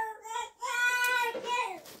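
A toddler's high voice singing a long held note, after a short one at the very start.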